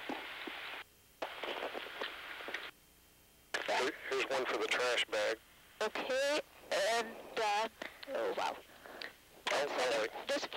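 Crew speech over the shuttle's intercom and radio loop, unclear and muffled. A band-limited hiss switches on and off in the first few seconds before the voices begin.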